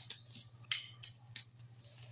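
A bird chirping: a short, high, rising note repeated about once every 0.7 s, with a few sharp clicks in between, the loudest near the start.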